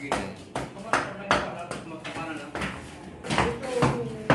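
Voices talking, with frequent sharp knocks and taps mixed in.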